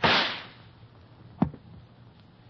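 A radio sound-effect gunshot: one sharp crack at the start that dies away over about half a second. A single short knock follows about a second and a half in.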